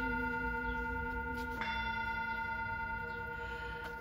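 Handheld singing bowl ringing with a steady low tone and several higher overtones, slowly fading, then struck again with its stick about one and a half seconds in.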